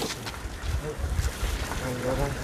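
Wind buffeting the microphone outdoors: an uneven low rumble with faint voices in the background.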